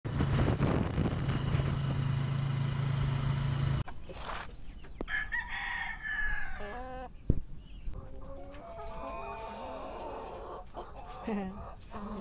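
A motorcycle tricycle's engine runs steadily for nearly four seconds and cuts off abruptly. Rhode Island Red chickens follow: a rooster crows twice, then hens cluck in short calls.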